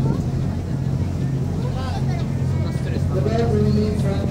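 Passenger ferry's engines running steadily under way, a constant low hum heard from the open deck, with passengers' voices over it.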